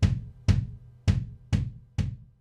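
Sampled drum hits from a drum-replacement plugin, one strike about every half second, each with a short ringing room tail. The overhead room microphone is being pulled down in the blend, leaving the stereo room sample.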